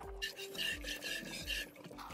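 Rhythmic hiss of a cow being hand-milked, spurts of milk hitting the pail about twice a second, over background music with a steady beat.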